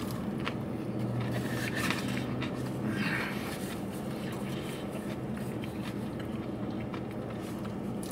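Close chewing of a crunchy breaded fried chicken sandwich, with irregular soft crackles and mouth clicks. Under it runs a steady low hum from the parked car.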